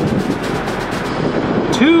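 A drum roll: fast, evenly spaced strikes that stop about a second in, leaving only faint background noise until a voice begins near the end.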